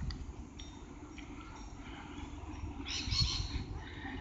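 Faint outdoor background noise: a low, uneven rumble, with a brief soft hiss about three seconds in.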